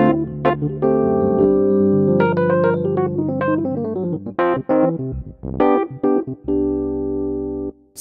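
Yamaha YDP-143 digital piano played on its electric piano voice, recorded straight from the headphone output: sustained chords, then a quicker run of separate notes in the middle, ending on a held chord that stops shortly before the end.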